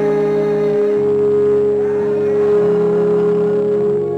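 Organ playing slow sustained chords, one bright note held over lower notes that change about a second in.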